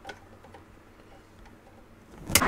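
Faint, soft ticking in a quiet car cabin.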